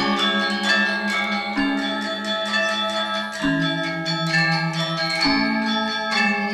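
Balinese gamelan orchestra playing: bronze metallophones struck in rapid ringing strokes over sustained lower gong-like tones that shift pitch every couple of seconds.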